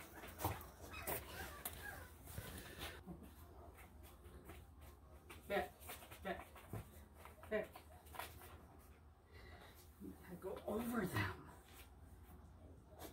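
Soft, low talking to a dog in brief snatches, with scattered light knocks and a faint steady low hum underneath.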